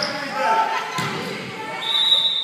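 A basketball bouncing on a hardwood gym floor, with one sharp bounce about a second in, amid players' voices echoing in a large gym. A high squeak starts near the end.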